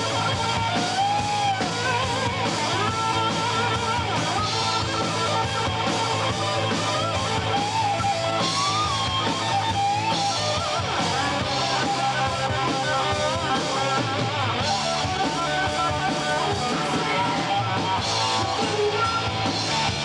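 Live rock band playing: distorted electric guitars over a drum kit, with a lead line that bends and wavers in pitch.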